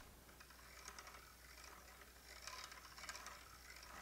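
Faint ticking and rattling of a hand-cranked bobbin winder being turned as yarn winds onto the bobbin, a little more steady in the second half.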